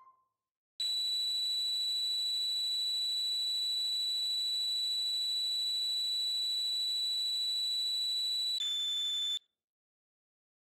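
A very high-pitched synthesized note from the Taqsim keyboard instrument, held steady for about eight seconds, then dropping to a slightly lower note for under a second before it cuts off.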